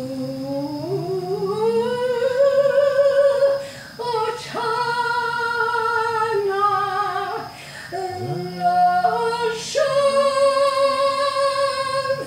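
A woman singing unaccompanied, a slow melody of long held notes that slide between pitches, with short breaks for breath about four and eight seconds in.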